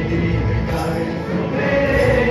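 Small mixed choir of young men and women singing a gospel song together, on held notes.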